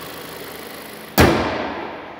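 Toyota RAV4's 2.5-litre four-cylinder engine idling, then the hood is shut a little over a second in: one loud thump that dies away over most of a second. After it the idle sounds more muffled.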